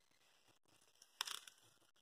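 Near silence, broken about a second in by a brief faint rustle and crackle of handling close to the microphone.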